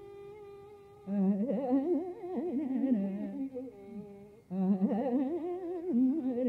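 A female Carnatic vocalist singing a raga Shanmukhapriya improvisation, her voice sliding and shaking through wide ornamented oscillations over a steady tanpura drone. The voice holds back for about the first second, leaving the drone, and breaks off briefly again at about four and a half seconds.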